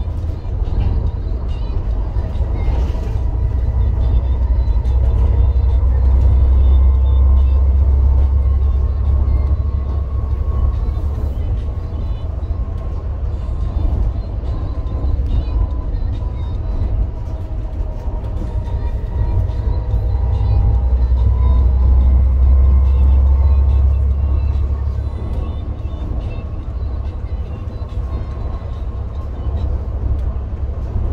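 Volvo B7TL double-decker bus's diesel engine and drivetrain heard on board while driving, a deep rumble that swells twice as it pulls harder, with a faint whine that slides in pitch.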